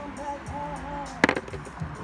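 Background music plays, and about a second in comes one sharp knock: a stone being set down on a wooden tabletop.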